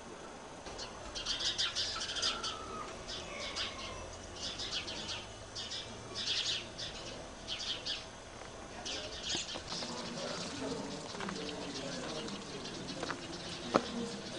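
Small birds chirping in quick clustered bursts, with a few short falling whistled calls.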